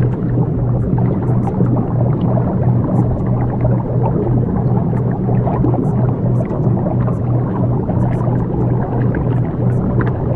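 Steady low drone of a delta-wave meditation track: two constant deep hums under a dense, murky rumbling texture, with faint scattered high ticks.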